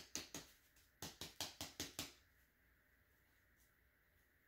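A rapid series of light clicks and taps, about five a second, as hands handle cuttings in a small plastic plant pot; they stop about two seconds in, leaving near silence.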